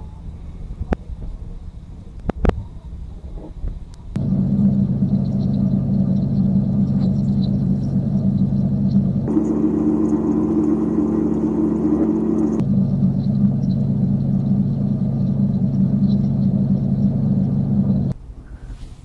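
A low, sustained drone chord of the film's soundtrack comes in suddenly about four seconds in. It shifts up to a higher chord for about three seconds in the middle, drops back, and cuts off at the end. Before it there are scattered clicks over a low rumble.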